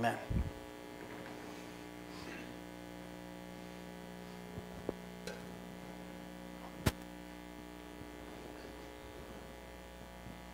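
Steady electrical mains hum, with a few faint clicks and knocks, the sharpest about seven seconds in.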